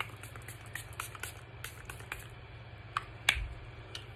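Pump-spray bottle of face mist spritzed in a quick run of short hisses, followed by a couple of sharp clicks about three seconds in.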